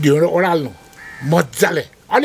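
A man's voice making drawn-out vocal sounds in two bursts, the first falling in pitch, the second shorter, about a second and a half in.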